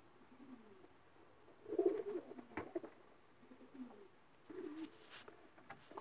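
Racing pigeons cooing faintly: a few low, short coos, the strongest about two seconds in, with a sharp click just after it.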